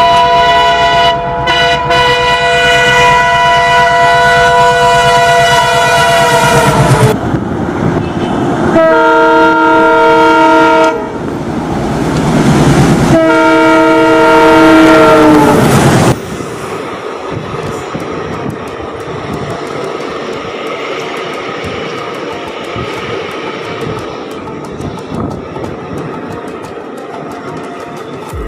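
Indian Railways diesel locomotive sounding its multi-tone horn in three long blasts as it comes past, the first and last sliding down in pitch as they end. After the third blast the passenger coaches roll by with a steady, quieter rumble of wheels on rail.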